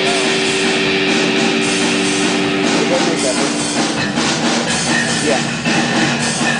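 Live rock band playing loud, noisy punk rock: distorted electric guitar over a drum kit. A held guitar note drops in pitch about three seconds in and again a second later.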